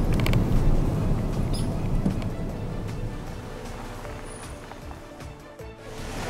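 Low rumble of a vehicle driving slowly, heard from inside the cab, gradually fading, with music faintly underneath.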